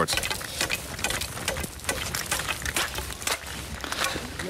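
Thin natural ice, only two or three centimetres thick, being broken through and crunching: a run of sharp, irregular cracks and ticks with loose shards. The ice is too thin to be safe.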